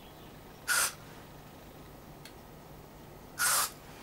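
Aerosol contact cleaner sprayed through its extension tube into a dirty volume-control potentiometer, in two short hissing bursts: one just under a second in, the other about three and a half seconds in. A faint click comes between them.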